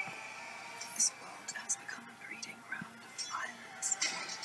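Film trailer soundtrack playing back: a hushed voice speaking in short phrases over faint music.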